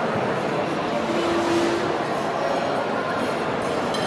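Dense crowd chatter: the babble of hundreds of diners talking at once in a large hall, with no single voice standing out. A short steady tone sounds from about a second in for under a second.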